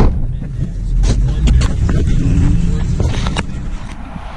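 Pickup truck cab noise while driving: a steady low rumble of engine and road, with a few short knocks and rattles.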